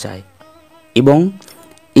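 A man speaking briefly, one word about a second in. Between his words a faint steady buzz-like tone holds at a constant pitch.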